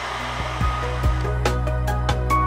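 Handheld hair dryer blowing steadily, drying fresh paint on a wooden board. Background music with a beat comes in about half a second in.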